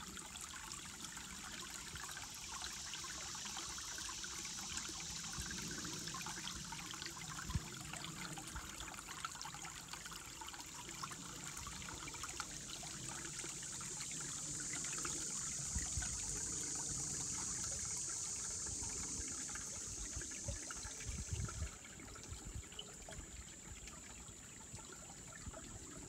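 Shallow forest creek trickling and gurgling as it runs over and between mossy rocks. Behind it, a steady high-pitched insect chorus, taken for katydids, swells in the middle and fades down about 22 seconds in.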